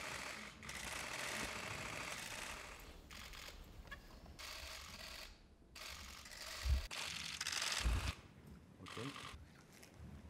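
Press cameras' shutters clicking in quick runs, with rustling and shuffling in the room; two short low thumps in the second half.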